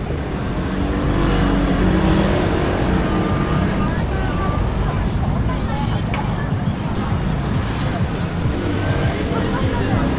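Busy city street ambience while walking through a crowd: a steady low rumble with scattered snatches of passers-by talking.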